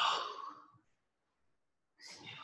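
A woman's short breathy exhale right at the start, fading away within about a second.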